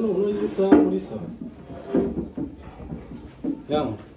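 Speech: a person talking in short phrases, with pauses between them.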